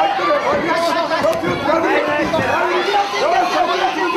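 Several voices shouting over one another at ringside: cornermen and onlookers calling out fight instructions, the words running together.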